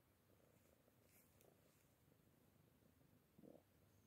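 Fluffy long-haired cat purring faintly, a low fine rumble that runs on throughout, with one brief louder sound about three and a half seconds in.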